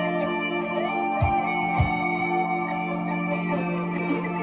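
Instrumental music: an electric guitar plays a melody with sliding, gliding notes over steady sustained backing chords, with two short low bass notes about a second in.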